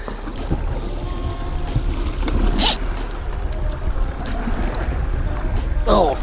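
Small fishing boat's motor rumbling steadily at trolling speed, with wind and water noise and a short hiss about two and a half seconds in.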